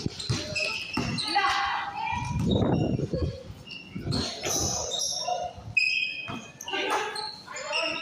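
Basketball game on a concrete court: the ball bouncing, sneakers squeaking in short high chirps, and players calling out to each other.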